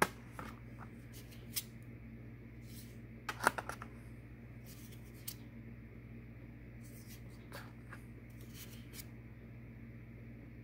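Oracle cards being handled and set down one after another against a wooden card board: light paper slides and taps, loudest in a quick cluster of taps about three and a half seconds in, over a steady low hum.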